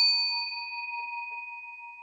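Bell-chime 'ding' sound effect of a subscribe-button animation, its ring fading slowly, with a couple of faint ticks about a second in.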